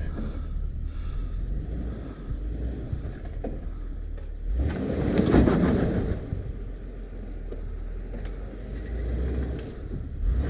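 Jeep Wrangler's engine running at low speed as it crawls over a log and rocks. About five seconds in, a louder rush of noise lasts a second or so.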